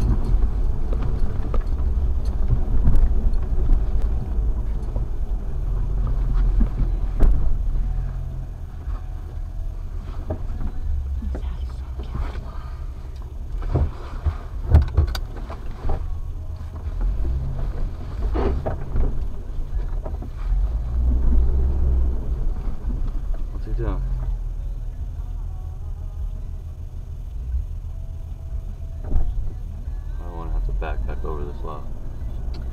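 Off-road vehicle heard from inside its cabin as it drives slowly along a snowy, rutted trail: a steady low rumble from the engine and drivetrain, with scattered knocks and thumps as it goes over bumps.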